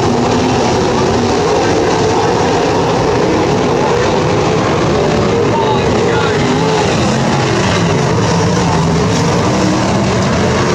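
Several 410 sprint cars' V8 engines running at racing speed, their pitch rising and falling as they go on and off the throttle.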